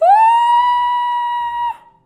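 A single high musical note that slides up at the start, is held steady, and cuts off a little before two seconds.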